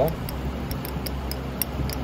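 A few faint, light ticks of glass on glass, a glass rod knocking inside a test tube as powder is worked into hydrochloric acid, over a steady low hum.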